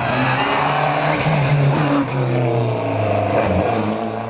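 Rally car accelerating hard past on a stage, the engine revving up through the gears: its pitch climbs, drops at a gear change about two seconds in, then climbs again.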